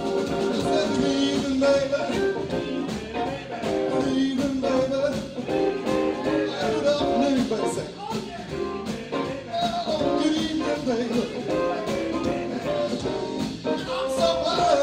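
A live band plays an instrumental break with no vocals. Electric guitar, keyboard and a drum kit keep a steady beat, and two tenor saxophones play at the start and again near the end.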